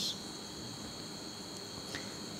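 Crickets trilling steadily at a high pitch over low, even background noise.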